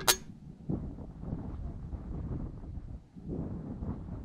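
Wind buffeting the microphone, with one short, sharp, high-pitched sound right at the start.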